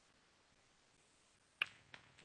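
Two sharp clicks about a third of a second apart, a second and a half in, the first much louder, against faint room tone.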